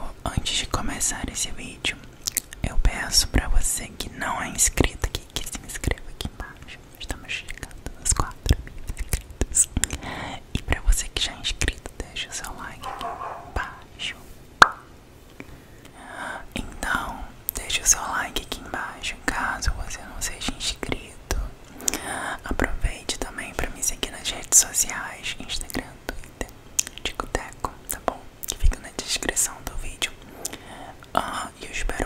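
Whispering very close to a microphone, broken again and again by short, dry mouth clicks and smacks.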